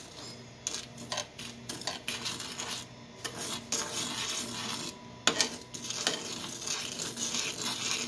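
Metal spoon stirring dry granulated sugar in a small pan, with irregular scrapes and light clinks of the spoon against the pan.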